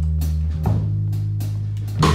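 Live blues-soul band playing a slow number between vocal lines: electric bass holding long low notes, changing pitch about half a second in, under electric guitar and drum-kit strokes.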